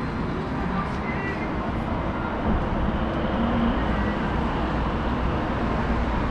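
City street ambience: a steady hum of road traffic with faint voices of passers-by.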